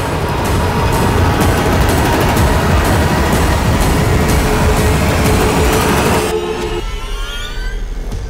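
Dramatic TV score with a loud rushing whoosh effect for a fall from a height; the rush cuts off about six seconds in, leaving rising glides and a held note.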